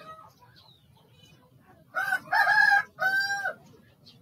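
A loud animal call in three joined parts, starting about two seconds in and lasting about a second and a half.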